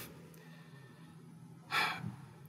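A man's single quick intake of breath near the end of a short quiet pause in his speech.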